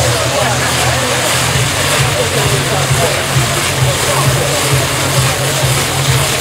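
A spinning ground-firework wheel burning with a loud, steady hiss, a low pulsing rumble underneath. Crowd voices are faintly audible.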